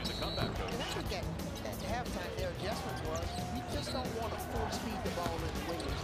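Basketball game sound from the court: the ball bouncing on the hardwood floor, players' sneakers squeaking in short bursts, and players calling out.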